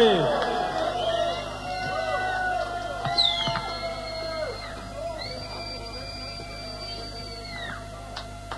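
Electric guitar feedback ringing out as a live heavy metal song ends: held, wavering tones that swoop and bend in pitch, fading gradually. There is a steep downward dive at the start and a high whine held for a couple of seconds near the end.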